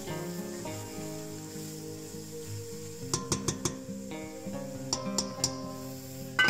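Background music with shifting sustained notes. A few sharp clicks come in two short clusters, one about halfway through and one near the end.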